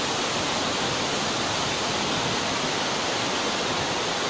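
Steady rush of river water pouring through a barrage's sluice gates: an even, unbroken wash of noise.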